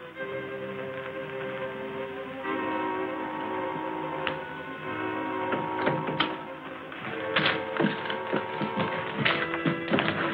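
Orchestral film score with held chords. Joined from about the middle by a run of short sharp taps and knocks that come thicker near the end.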